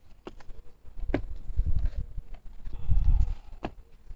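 Low rumbling bursts and three or four sharp clicks and taps: handling noise close to the microphone.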